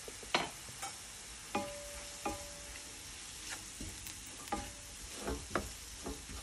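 Wooden spatula stirring flour into frying onions and peppers in a nonstick pan: a steady low sizzle under a series of short knocks and scrapes of the spatula against the pan. The flour is being fried with the vegetables to thicken the sauce.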